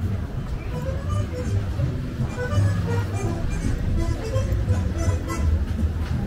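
Pop-style music with a pulsing bass beat and a melody, playing over the loudspeakers of a children's fairground carousel, with passers-by talking under it.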